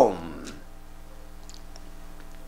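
A man's voice trails off on a falling word, then a pause holds only a steady low electrical hum with a couple of faint clicks about one and a half seconds in.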